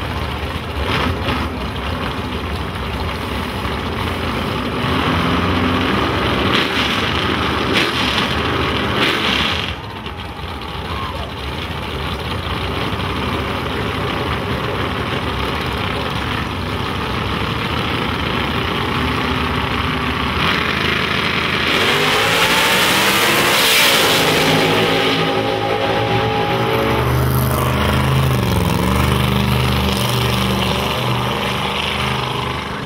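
Small-block V8 nitrous drag-car engines running at the starting line. About 22 seconds in, one engine revs up hard in a rising sweep that becomes the loudest sound, then drops back to an uneven, rumbling idle.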